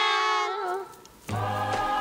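Children's voices singing together in unison, fading out within the first second. After a brief lull, recorded music with a steady, repeated bass note starts suddenly.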